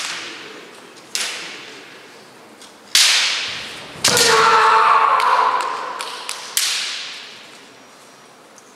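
Kendo bout: several sharp cracks of bamboo shinai strikes, each trailing off in the echo of a large hall. About four seconds in, a strike comes with a long drawn-out kiai shout lasting over a second.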